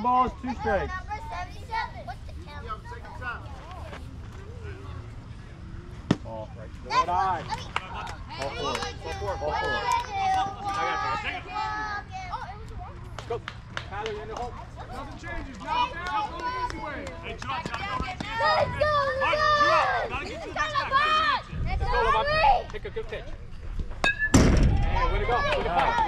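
Indistinct voices of young players and spectators calling and cheering across a baseball field, with a single sharp click about six seconds in and a loud thump near the end.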